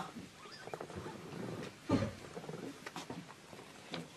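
A pause in stage dialogue: faint knocks and rustles from actors moving on a wooden stage, and a short, low murmured 'mm' about two seconds in.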